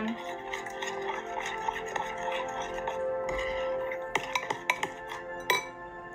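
Background music, with a spoon clinking against a glass mixing bowl as sticky slime is stirred; several clinks, mostly in the second half.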